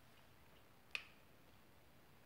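Near silence, broken by a single sharp click about a second in.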